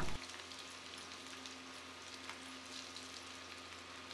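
Faint sizzle of drumstick pieces and potato chunks frying in oil on a flat pan, with an occasional light tick.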